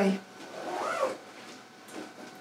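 Felt-tip marker squeaking on a whiteboard as letters are written: one short squeak that rises and falls in pitch, with a light tick of the marker near the end.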